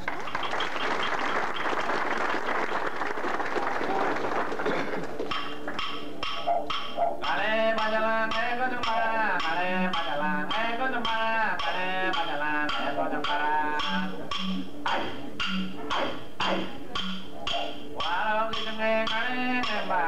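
Aboriginal song with didgeridoo: after a few seconds of rushing noise, a steady didgeridoo drone sets in with sharp percussive clicks about twice a second. A singing voice joins a couple of seconds later.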